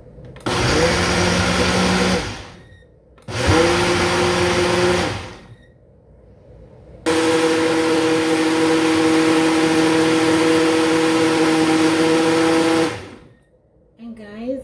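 Ninja blender motor blending a milk, banana and oat smoothie in a single-serve cup. It runs two short bursts of about two seconds each, then a longer run of about six seconds. Each run spins up quickly, holds a steady whine and then winds down.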